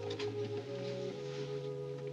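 Orchestral film score playing held notes, with a low note that shifts about a second in.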